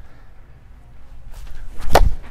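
A tennis racquet smashing a fed tennis ball with a full swing: one sharp, loud pop of string on ball near the end.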